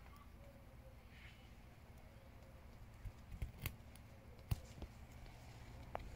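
A few faint, sharp clicks between about three and four and a half seconds in, as a small knife cuts a side shoot off a tomato plant.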